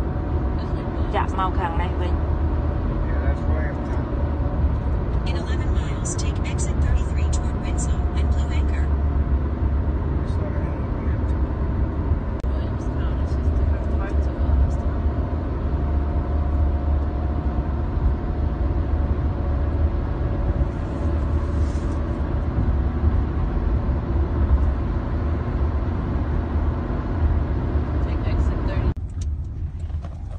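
Steady road and engine noise heard inside a car's cabin at highway speed: a constant low rumble under a hiss of tyre and wind noise, which drops quieter shortly before the end.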